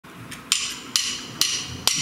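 A drummer counting the band in with four evenly spaced clicks of the drumsticks, about two a second.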